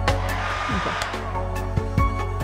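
Handheld hair dryer blowing on a freshly glued paper-napkin decoupage board to dry the glue, its rush fading out about a second and a half in. Background music with a regular beat plays under it.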